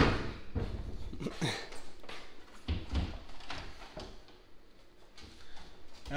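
A series of knocks and bumps as a countertop appliance is handled and set into a kitchen cabinet and the cabinet door is worked, the sharpest knock right at the start.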